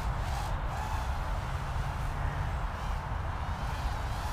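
Wind buffeting the microphone in an uneven low rumble, with the faint buzz of a small brushed-motor hexacopter flying some distance off.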